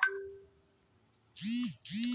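A narrator's voice trails off into a near-silent pause of under a second. A short spoken syllable follows, then talking resumes.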